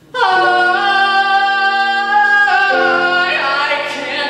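A male singer performing a musical theatre song with piano accompaniment. He holds one long high note for about two and a half seconds, then moves on to lower notes.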